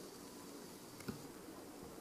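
Quiet room tone with a single faint click about a second in.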